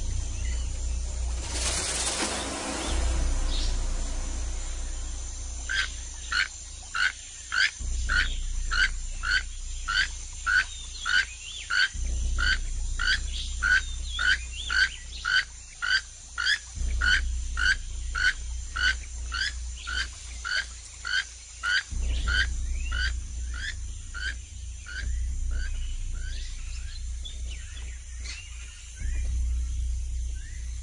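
Rainforest sounds: a short call repeated about twice a second, each call rising in pitch, starting about six seconds in and fading near the end, over a low steady rumble.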